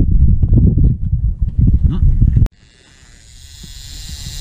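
Wind buffeting the camera microphone: a loud, irregular low rumble that cuts off abruptly about two and a half seconds in, followed by a faint hiss that grows louder toward the end.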